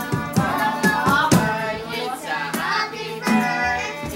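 Voices singing a serenade song with acoustic guitar accompaniment and repeated sharp percussive strokes.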